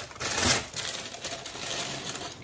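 Newspaper-print paper wrapping crinkling and rustling as it is pulled open and off a cup, louder about half a second in.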